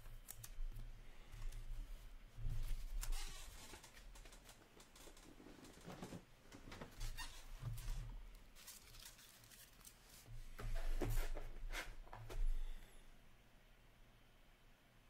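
Hockey trading cards and their packaging being handled on a counter: bouts of rustling and crinkling, loudest about three seconds in and again around eleven seconds, over a faint steady low hum.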